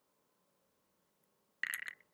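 Near silence, then a brief burst of sharp clicks near the end.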